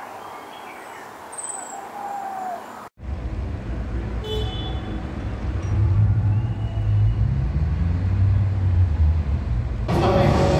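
For about three seconds a few short bird calls sound over a quiet outdoor background. After a sudden cut, steady road-traffic rumble takes over, growing louder about six seconds in, with one brief high toot about four seconds in.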